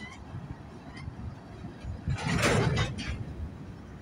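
Slow-moving freight train rolling past: a low rumble of wheels on rail, rising to a louder, noisier stretch about two seconds in before easing off again.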